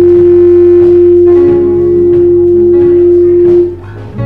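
Live worship band music ending on a loud, steady held keyboard note with softer notes and light percussion taps under it; the held note cuts off shortly before the end.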